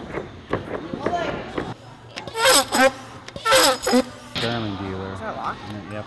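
People's voices, with two loud excited calls or laughs in the middle.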